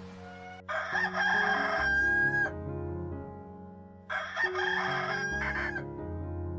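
A rooster crowing twice, the first crow ending in a long held note, over soft background music.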